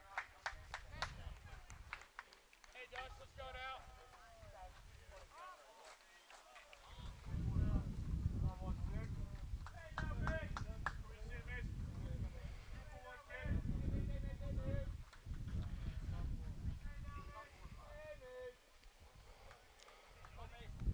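Distant voices of players and spectators calling and chattering around a baseball field, with a low rumble that comes and goes from about seven seconds in.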